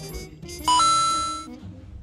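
A short electronic chime: a brief low note jumping to a higher one, held for under a second as it fades, then cut off.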